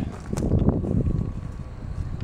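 Low rumbling wind and handling noise on a hand-held camera's microphone while it is carried along, with a few light knocks in the first second.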